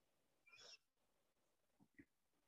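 Near silence: room tone, with one faint short sound about half a second in.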